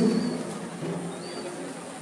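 The echo of an amplified man's voice dies away, then two short, high bird chirps about a second apart sound faintly over the outdoor background.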